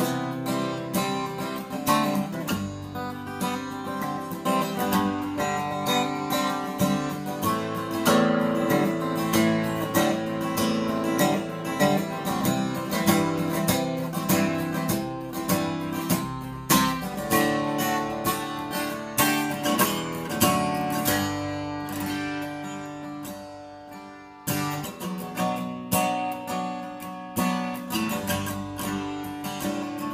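Avalon L201C jumbo acoustic guitar, cedar top with rosewood back and sides, playing strummed chords. A little past twenty seconds the chords ring down to a lull, then the strumming starts again with a sharp attack.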